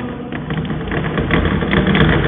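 Chalk scratching and tapping on a chalkboard as a word is written, over a steady low rumble.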